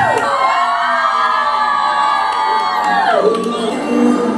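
An emergency-vehicle siren wailing over crowd noise: one long held tone that slides down and fades about three seconds in.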